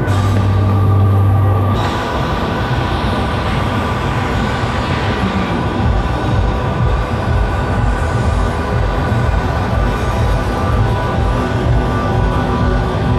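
Amplified live band music from an outdoor festival stage's PA, heard from well outside the arena and sounding muddy and bass-heavy. A loud held bass note runs for the first couple of seconds, then gives way to a dense wash of band sound.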